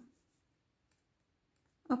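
Near silence between a woman's spoken words, broken by two faint clicks of metal knitting needles working stitches, one about midway and one near the end.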